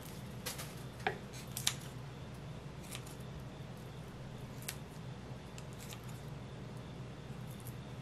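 Kitchen scissors, blades wetted with water, snipping through a chilled, chewy block of glutinous rice cake: a handful of quiet, sharp snips spaced a second or more apart, over a faint steady low hum.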